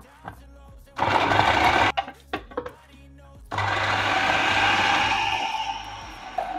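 Electric food processor chopping fresh okra: a short pulse of about a second, then a longer run of about two and a half seconds that winds down near the end. The okra is being chopped fine for okra soup.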